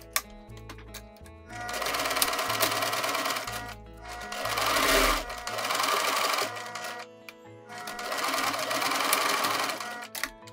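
Electric domestic sewing machine running a straight stitch through sweatshirt fabric in three bursts of about two to three seconds each, with short pauses between them, starting about a second and a half in.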